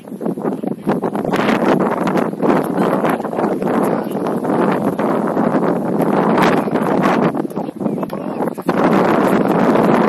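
Wind buffeting an outdoor camera's microphone: a loud, gusting rush that swells and dips, growing louder near the end.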